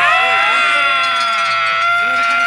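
Several men yelling together in one long, high-pitched shout that rises at the start and then holds steady.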